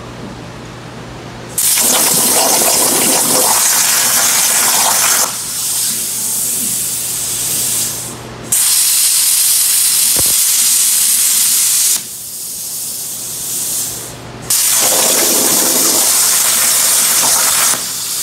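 CNC plasma cutting torch cutting steel over a water table. The arc hisses loudly in three stretches of about four seconds each, starting about a second and a half in, with quieter hissing between them. Before the first stretch there is a low, steady machine hum.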